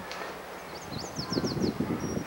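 A bird in the background singing a quick run of about seven short, high, falling chirps, over a low rumble of wind on the microphone.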